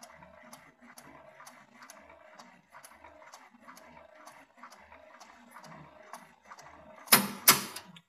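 Schopper-type folding endurance tester running, its folding slit moving back and forth to double-fold aluminium foil specimens with a soft, regular ticking of about two strokes a second. Near the end there are two loud, sharp knocks.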